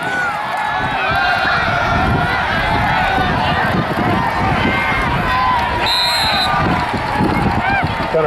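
Football crowd cheering and shouting as a play unfolds, many voices at once. A referee's whistle blows once, briefly, about six seconds in, ending the play.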